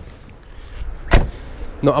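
A car door shut once with a single heavy thud a little past a second in. A man starts speaking near the end.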